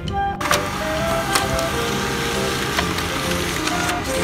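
HP LaserJet M15w laser printer running as it feeds a page out, a steady mechanical rush that starts suddenly about half a second in, with a few sharp clicks.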